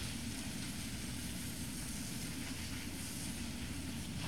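Steady outdoor background noise: a low rumble with an even hiss over it, and no distinct events.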